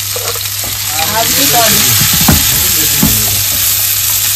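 Chopped onions sizzling in hot oil in a kadai while a spatula stirs them. There is a steady frying hiss, with a couple of louder scrapes or knocks of the spatula against the pan about two and three seconds in.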